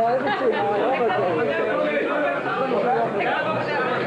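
Several people talking at once: overlapping chatter with no one voice standing out.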